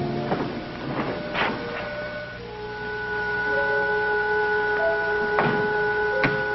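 Sci-fi spaceship instrument-panel sound effect. A few sharp clicks come first, then from about a second and a half in several steady electronic tones are held, with short bleeps and two more clicks near the end.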